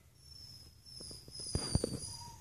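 A run of light clicks and taps from a young puppy scrabbling about on a blanket and plastic disc, growing louder toward the end, under a faint, high, thin whine that falls slightly.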